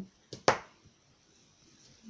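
A short, sharp click about half a second in, with a fainter one just before it, then quiet room tone.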